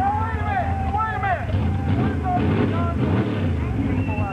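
Engine of a lifted Jeep CJ mud bogger running while the truck sits bogged in deep mud, its pitch rising and falling in the middle. People's voices can be heard over it.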